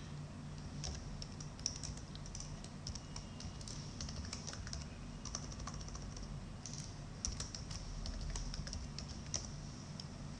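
Computer keyboard typing: a run of quick key presses entering a username and password, with a few sharper, louder strokes, over a faint steady low hum.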